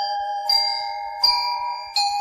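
A slow melody of bell-like chimes: single notes struck about every three quarters of a second, each ringing on into the next, as the bell-toned opening of a devotional song.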